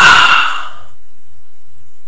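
A man's breathy voice fading out over the first half-second, then a faint low rumble.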